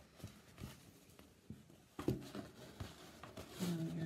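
Faint rustling and soft handling clicks of linen fabric as a cross-stitch sampler is unfolded and held up.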